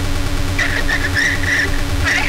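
Live industrial techno played on hardware synthesizers and drum machines: a steady low bass drone under a held hum tone, with short high whistling electronic squeals starting about half a second in.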